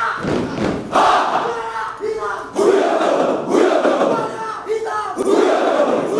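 A large group of soldiers shouting a chant in unison, in loud shouted bursts about once a second, some lines ending on a held note.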